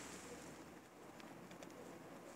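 Near silence: faint background hiss with a few very faint ticks.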